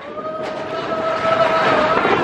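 Matterhorn Bobsleds coaster car rumbling along its track at speed, with one long steady tone held over the rumble.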